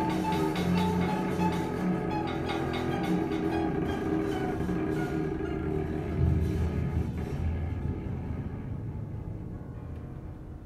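Free improvisation on violin, cello and percussion: dense sustained tones with a low swell about six seconds in, then dying away toward the end.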